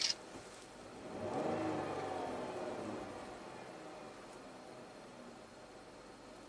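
Pentastar 3.6 V6 of a Dodge Grand Caravan revved once, faintly: the engine note rises about a second in, then sinks slowly back toward idle over the next few seconds.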